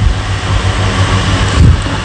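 Steady background noise: a low hum under an even hiss.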